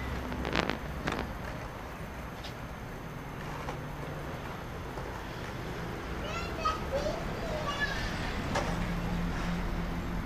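A toddler's voice calling out briefly a few times in the second half, over a steady low rumble. Two sharp knocks sound near the start.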